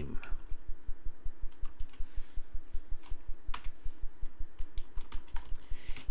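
Typing on a computer keyboard: a quick run of keystroke clicks and thumps.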